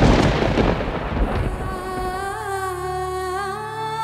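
A thunder-like crash used as a dramatic sound effect, fading away over about two seconds. Background music with long held tones then comes in underneath.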